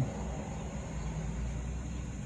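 Steady low hum and hiss of background noise, with no distinct event.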